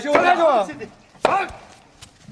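A man shouting in Arabic, then a sharp whack of a blow about a second in, followed by a short shouted word. The blows are staged and meant to make noise, not to hurt.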